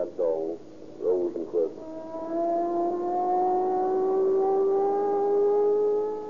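A siren wailing up, one tone rising slowly and steadily in pitch over about four seconds, after a few brief spoken words at the start.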